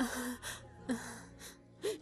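A woman sobbing: about five short, breathy gasping sobs, a couple of them with a brief catch in the voice.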